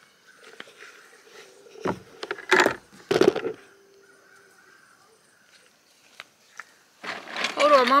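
Three heavy knocks and thumps on a wooden picnic table, about two to three and a half seconds in, as a plastic bucket and the camera are set down on it. A woman starts speaking near the end.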